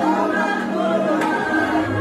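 A group of voices singing a gospel song together in sustained, held notes.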